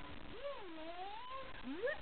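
A cat meowing: two long calls that waver up and down in pitch, the second sweeping up steeply near the end.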